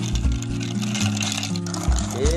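Background music with a bass line and steady beat, over the rapid clinking of ice in a glass mixing glass as a bar spoon stirs it.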